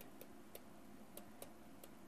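A handful of faint, irregular ticks of a stylus tapping on a tablet's writing surface as words are handwritten, over near-silent room tone.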